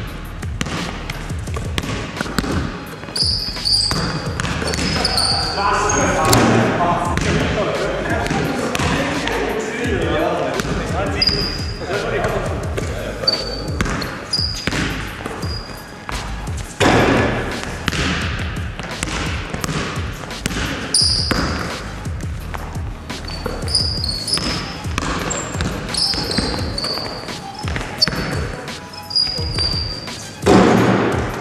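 Basketballs bouncing on a sports-hall floor and sneakers squeaking in short high chirps during a pickup game, with players' voices calling out.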